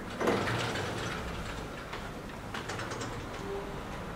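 Chalk tapping and scraping on a blackboard in a run of short irregular clicks, with a cluster of sharper taps a little past halfway, along with a few footsteps.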